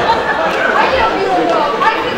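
Speech: actors talking on stage.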